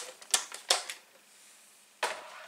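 A plastic paper trimmer being lifted and moved across a craft desk, giving a few sharp clacks in the first second.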